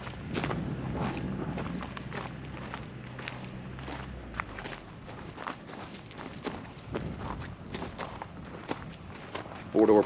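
Footsteps on gravel, about two steps a second, with a low hum in the background that fades out about halfway through.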